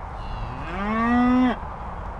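A cow mooing once: a single call that rises in pitch, holds steady for about a second, and stops abruptly.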